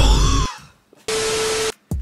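A single spritz from a small pump spray bottle of fart spray about a second in: an even hiss with a steady tone under it, starting and stopping abruptly and lasting just over half a second.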